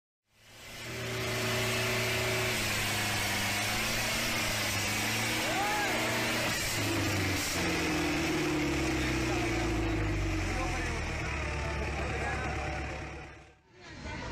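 Diesel tractor engines working hard in a tug-of-war between two hitched tractors, the red tractor's rear wheels spinning; the engine note holds steady, then sinks from about halfway through as the engine lugs under the load. Crowd voices are heard over it.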